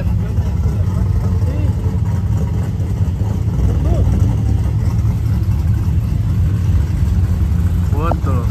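Pickup truck engines idling, a steady low drone.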